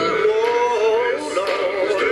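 Music with singing: several voices holding long, wavering notes.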